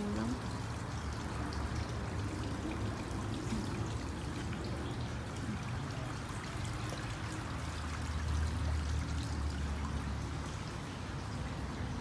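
Water trickling and splashing steadily from a garden fountain, under a low rumble that grows stronger about eight seconds in.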